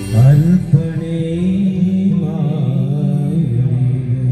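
A man's voice sings a long, wavering held line into a microphone, entering with an upward swoop, over steady electronic keyboard accompaniment: a Kannada Christian devotional song.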